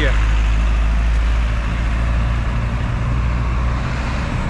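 Motor traffic passing close by on the road: a steady, loud low engine rumble with road noise, easing slightly near the end.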